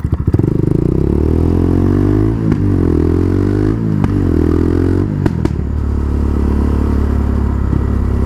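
Quad bike engine accelerating through the gears, its pitch climbing and breaking at about three shifts, then running steadily at cruising speed for the last few seconds.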